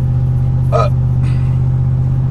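Car driving along, heard from inside the cabin: a steady, loud, low hum from the engine and road that doesn't change. A short 'uh' from the driver comes just under a second in.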